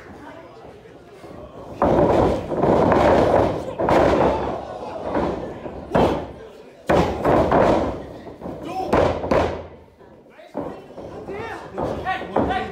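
Wrestlers' bodies hitting the ring canvas: several loud slams and thuds, one every one to two seconds, mixed with crowd voices in a hall.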